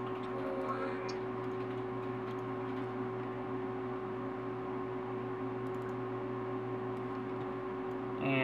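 Steady electrical hum with room noise, and a few faint clicks about five to six seconds in.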